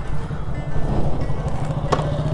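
A motorcycle engine idling steadily under background music, with one sharp click near the end.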